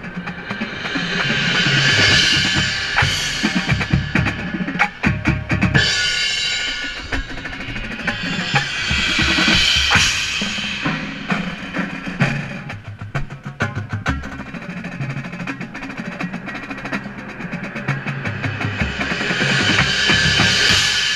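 Drum corps percussion section playing together, with marimba played with yarn mallets close at hand and drums rolling and striking in rhythm. A high shimmering wash, typical of mallet rolls on suspended cymbals, swells up three times.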